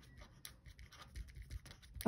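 Faint scratching of a pen writing a word on paper, in short irregular strokes.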